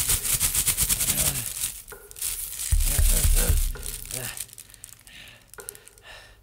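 Close crinkling of plastic, dense for about the first two seconds, with a man's wordless groans. The loudest groan comes around the middle, after which only scattered crackles remain.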